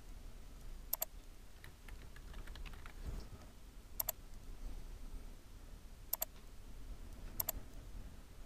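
Computer mouse clicks, each a quick double tick, four times a few seconds apart, with faint keyboard typing between the first two clicks.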